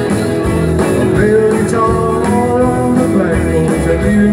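Live rockabilly band playing an instrumental passage: electric guitar lines over bass and drums, with no break in the beat.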